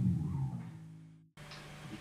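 Electric bass guitar note ringing and fading away, cut off suddenly about a second and a quarter in; a fainter low tone then hums on until the end.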